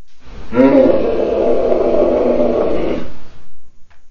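A loud, drawn-out roar, pitched and falling at first, lasting about two and a half seconds and dying away about three seconds in.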